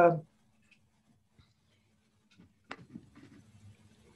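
A man's voice trails off at the start into a pause of near silence. About two and a half seconds in there is a single sharp click, followed by faint low rustling noise over a video-call microphone.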